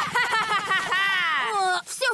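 A cartoon child character's high-pitched voice making wordless sounds: a few short syllables, then one long call that rises and falls away.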